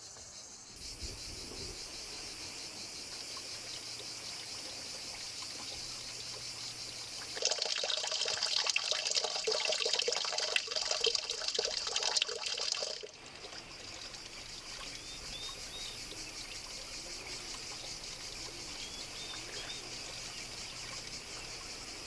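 A thin stream of water falling and splashing onto stone, heard for about six seconds in the middle, then cutting off suddenly. Before and after it, a faint steady high drone of insects, with a few small bird chirps in the later part.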